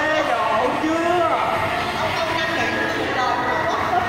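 A person's voice, speaking or vocalising with no clear words, with other voices faintly behind it.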